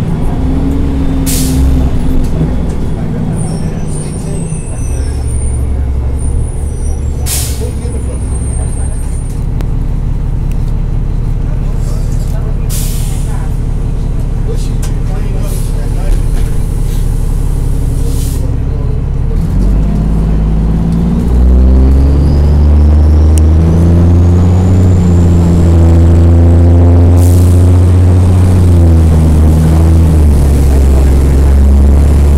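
Interior sound of a NABI 40-SFW transit bus's Cummins M-11 diesel: the engine slows and holds a steady low idle, then revs up about twenty seconds in as the bus pulls away, its pitch climbing and dropping back as the Allison automatic transmission shifts. Short air hisses from the brakes come several times.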